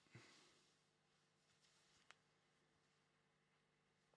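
Near silence: room tone with a faint hum, a soft rustle just after the start and one small click about two seconds in.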